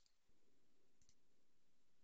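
Near silence with a low room hum, and one faint computer-mouse click about a second in.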